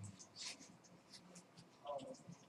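Faint, brief scratchy sounds over a low room hum in a quiet room, with a faint voice in the background near the end.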